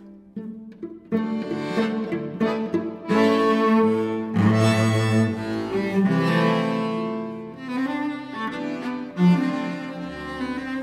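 Cello and accordion duet playing a lively folk-dance tune, the cello carrying the melody over the accordion. After a brief near-pause, the playing comes back in about a second in.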